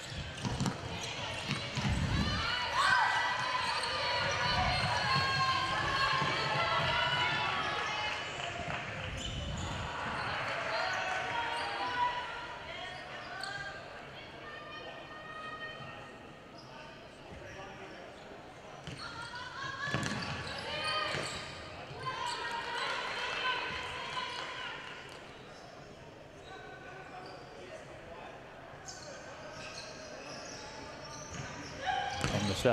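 Futsal players shouting and calling to each other on an indoor court, with occasional thuds of the ball being kicked and bouncing on the wooden floor, echoing in a large sports hall. The voices are busiest in the first twelve seconds and again around twenty seconds in.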